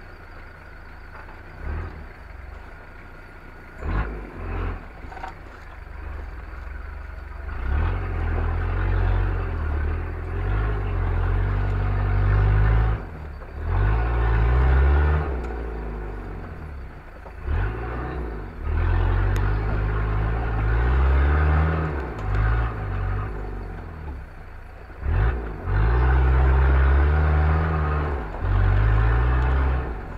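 Off-road 4x4's engine heard close up, revving in repeated surges that rise in pitch as it crawls over rocks, quieter for the first few seconds, with a few sharp knocks and clatter from the vehicle jolting on the rough ground.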